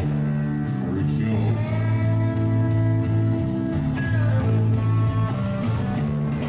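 Live country-rock band playing an instrumental passage between sung lines: acoustic guitar strummed, with drums and electric guitar, held notes ringing over a steady low line.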